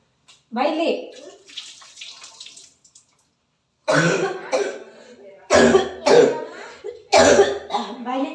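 A person's voice in loud, short outbursts, three of them in the second half, with a brief hiss of noise early on.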